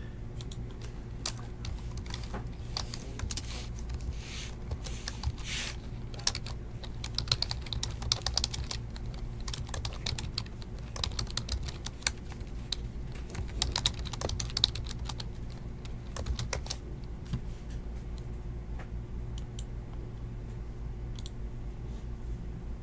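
Typing on a computer keyboard: runs of quick keystrokes with short pauses, busiest through the middle and thinning out near the end, over a steady low hum.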